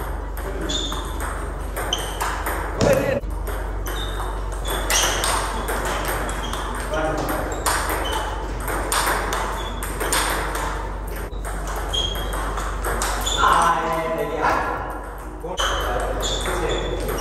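Table tennis ball hit back and forth with paddles and bouncing on the table in a rally: a string of short, sharp pocks, each with a brief high ring.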